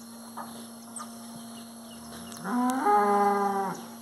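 A single moo from one of the cattle, about two and a half seconds in. It lasts about a second and a half, sliding up in pitch at the start and then holding steady.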